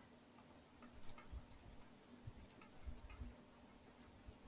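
Near silence with a few faint ticks and soft taps, from a stylus writing on a screen or tablet.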